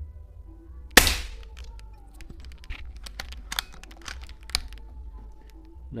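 Air rifle firing a single JSB pellet: one sharp shot about a second in, followed by a few fainter clicks over the next few seconds.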